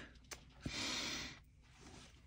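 Scissors cutting through cotton fabric: a couple of short clicks of the blades, then a brief rasp of the blades closing through the cloth, under a second long.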